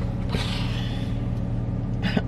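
Car engine idling, heard from inside the cabin as a steady low hum. About half a second in, a soft breathy hiss rises over it and then fades.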